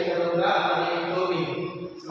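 A man's voice reciting the Arabic alphabet letter names in a melodic, drawn-out chant, with held notes and a brief pause near the end.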